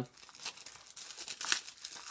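Plastic wrap on a Blu-ray/DVD case crinkling and tearing as it is pulled off, a run of small crackles with a louder one about one and a half seconds in.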